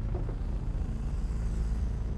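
A low, steady rumble with no clear events in it.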